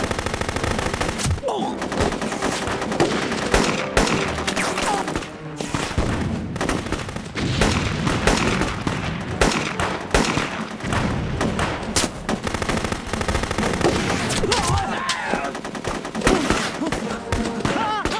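Staged film gunfire from a forest firefight: a dense exchange of shots from submachine guns, rifles and pistols, with rapid bursts and single cracks following each other many times a second throughout.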